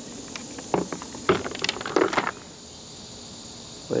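Handling of a laptop-style charger's power cord and plug: a cluster of clicks and light rattles from about half a second to two seconds in, then quiet handling.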